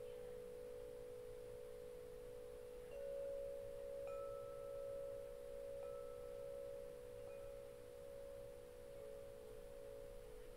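Faint, calm meditation background music: soft, steady pure tones held throughout, like a tuning fork or singing bowl, with a new gentle tone entering every second or two.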